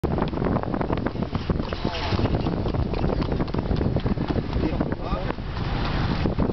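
Steady low rumble and dense irregular rattling of a moving vehicle, with wind buffeting the microphone.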